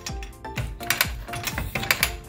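Light background music of plucked notes, each note starting with a crisp attack several times a second.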